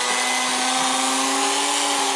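Electric hand mixer running at a steady speed, its beaters whipping mashed potatoes in a stainless steel pot. Its motor hums at one even pitch.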